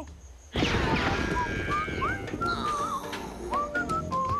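Cartoon stampede of a gnu herd: a rumble of many hooves starts suddenly about half a second in and carries on, with music and short whistle-like glides over it.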